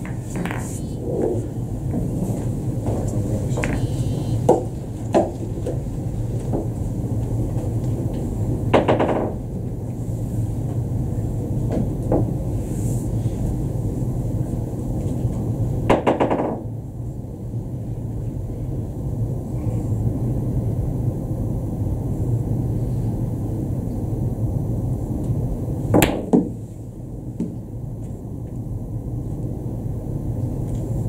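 Billiard balls on a boccette table: a few light clicks as balls are set down on the cloth, then three sharp ball-on-ball clacks with a short ring, several seconds apart, over a steady low hum of the hall.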